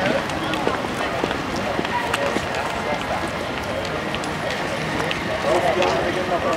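Crowd chatter, many voices talking indistinctly, with footsteps and scattered clicks on paved ground.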